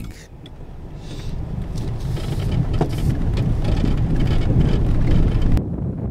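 A car driving along a rough dirt track, heard from inside the cabin: a low rumble of engine and tyres that grows steadily louder, with scattered knocks and rattles, cutting off suddenly near the end.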